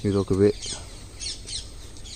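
A bird calling in short, high, falling notes, three in quick succession after a brief word of speech.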